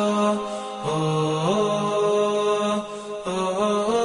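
Unaccompanied chanted vocal used as background music: a single voice holding long notes that step up and down in pitch, with short pauses about a second in and near the three-second mark.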